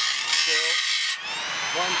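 Grinding wheel of a homemade automatic band saw blade sharpener grinding a tooth of a Wood-Mizer silver tip blade, a loud hissing grind that cuts off about a second in. The motor's whine then climbs in pitch and settles as the grinding stops.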